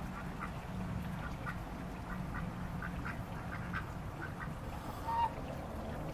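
Pet ducks quacking softly in many short, scattered calls while they forage, with one slightly louder short call about five seconds in. A steady low hum runs underneath.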